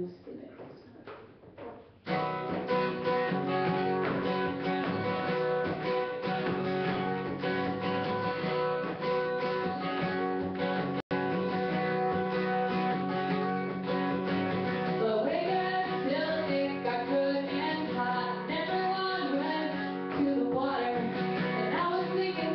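Steel-string acoustic guitar strummed, coming in about two seconds in as the opening of a song; a woman's singing voice joins over it in the second half. The sound cuts out for an instant about halfway through.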